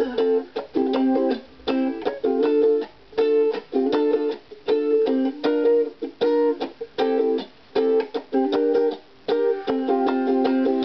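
Solo ukulele strummed in a reggae style with no singing: short, choppy chord stabs, each cut off quickly, leaving brief silences between them.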